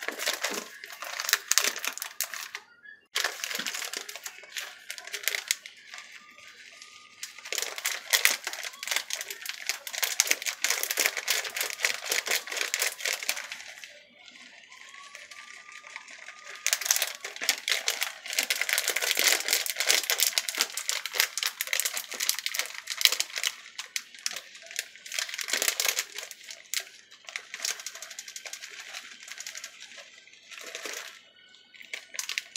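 Plastic bag of shredded cheese crinkling and rustling as the cheese is shaken out over a pizza base. It comes in long stretches, with quieter lulls around five and fourteen seconds in.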